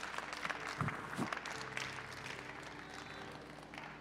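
Congregation applauding, the claps thinning out and growing quieter over a few seconds, with faint held musical tones underneath.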